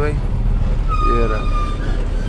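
A truck's diesel engine and road noise heard from inside the cab as it drives, a steady low rumble. About a second in, a brief voice sounds, and a steady high-pitched tone lasts about a second.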